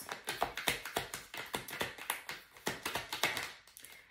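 A tarot deck being shuffled by hand: a quick, irregular run of soft card clicks and taps that thins out near the end. The shuffle comes just before a clarifier card is drawn.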